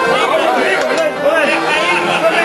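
Chatter: several people talking at once, their voices overlapping.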